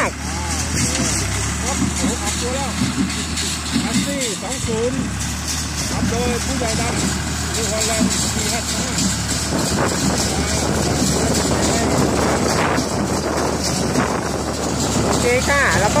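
New Holland tractor's diesel engine running steadily under load as it tows a small square baler working through rice straw, getting somewhat louder as the rig draws closer.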